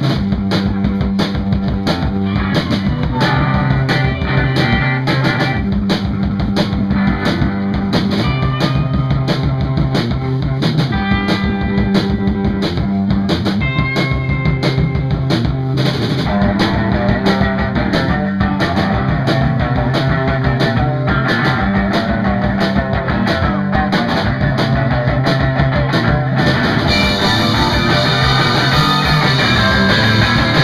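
Live rock band playing loud: drum kit, electric bass and electric guitar over a steady beat. About 26 seconds in the sound turns brighter and fuller.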